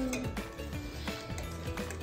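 Light clinks of a metal utensil against a stainless steel hot pot, over quiet background music.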